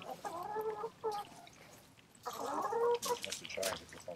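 Chicken clucking in two short bouts, one about a second long near the start and another a little past the middle.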